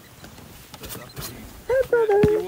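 A person's voice: a loud, high vocal exclamation with a bending pitch near the end, over faint steady background noise.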